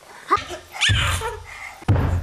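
A baby's short high-pitched squeals, each rising sharply in pitch, about a third of a second in and again about a second in, with a deep rumble under the second one.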